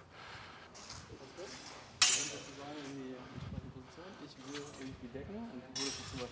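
Steel longswords clashing, a sharp metallic hit with a brief ring about two seconds in and another just before the end, over faint voices of people talking.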